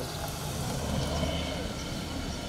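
Low, steady rumble of a motor vehicle's engine, swelling slightly in the middle.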